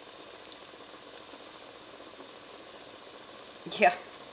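Faint, steady sizzling hiss from just-cooked, cornstarch-coated chicken pieces in the hot air-fryer pan, with one light click about half a second in.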